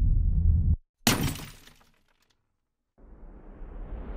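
Edited intro sound effects: a low rumble that swells and cuts off, then a sudden crash about a second in that dies away over about a second. From about three seconds a rising whoosh builds.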